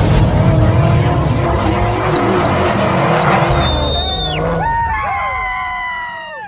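Intro sound effects of a car: a loud rumbling engine roar with squealing whines. The whines slide down in pitch near the end.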